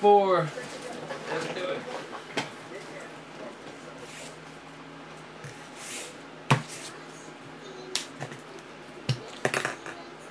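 A voice trails off at the very start. Then rigid plastic card top loaders clack against each other and the table as a stack of cards is picked up, a few separate sharp clicks a second or more apart, the sharpest about six and a half seconds in.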